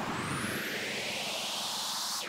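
Synthetic whoosh transition effect: a steady rush of noise sweeping upward in pitch, like a jet passing.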